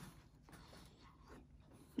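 Near silence, with a faint bite into pie crust and quiet chewing.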